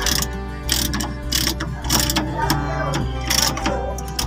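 Hand ratchet wrench clicking in repeated strokes, about two or three a second, as it tightens the nut on a leaf-spring shackle bolt fitted with new bushings.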